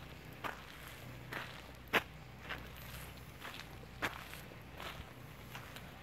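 Footsteps on a gritty paved road: a series of soft, irregular steps about every half second to a second, the sharpest about two and four seconds in.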